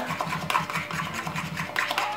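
A metal spoon stirring thick chocolate protein-muffin batter in a ceramic bowl, scraping the sides in a quick, even rhythm of strokes.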